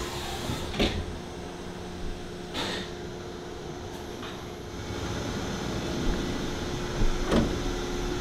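CNC lathe humming steadily, with a few separate metallic clicks and clunks as the finished stainless drain plug is ejected into the parts catcher. Near the end, a sheet-metal parts-catcher drawer is pulled open with a clunk.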